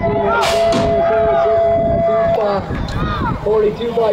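BMX starting gate: a steady electronic start tone sounds for about two seconds, and the gate drops with a loud bang just after the tone begins, starting the race.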